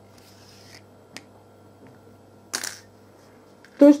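Quiet handling of a crocheted toy and a sewing needle with thread, with a soft click about a second in and a short, sharp rustle about two and a half seconds in.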